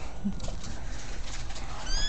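A kitten gives one short, high-pitched mew near the end, its pitch falling slightly, over quiet background noise.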